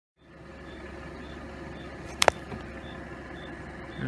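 Steady low hum of an idling vehicle, with two sharp clicks in quick succession a little over two seconds in.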